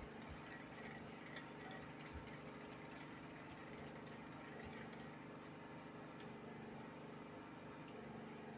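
A wire whisk stirring a thin liquid batter base in a glass bowl, faint, with a few light ticks, to dissolve the sugar. A steady low hum runs underneath.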